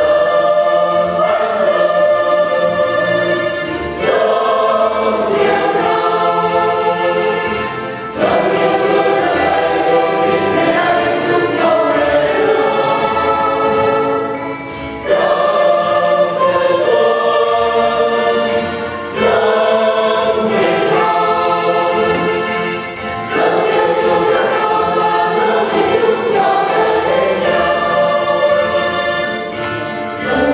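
Church choir singing a hymn in long phrases, with short breaks between phrases every few seconds.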